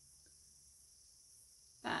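Faint, steady high-pitched chirring of crickets through a pause in conversation, with a woman's voice starting near the end.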